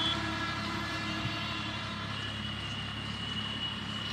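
Swaraj 855 FE tractor's three-cylinder diesel engine running steadily at a distance under the load of a laser land leveller, a low even drone. A thin steady high tone joins about halfway through.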